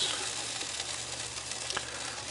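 Hot meat juices and bacon grease sizzling as they are drained from a cast iron loaf pan of bacon-wrapped meatloaf into a stainless steel bowl.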